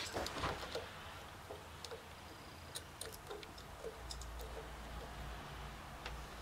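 Faint scattered light clicks and taps of metal being handled as a steel rule is set against the drill bit and the cast-iron workpiece to measure depth. A low steady hum comes in about four seconds in.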